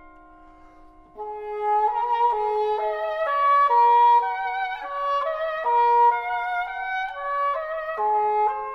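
English horn playing a quick, flowing melody of short stepping notes. It enters about a second in, after a quiet, fading held sound.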